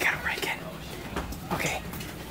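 Hushed whispering voices, with one whispered burst at the start and another about one and a half seconds in.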